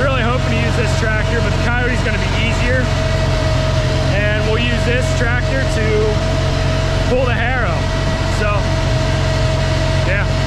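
Farmall 504 tractor engine idling steadily, a constant low hum with a man's voice talking over it.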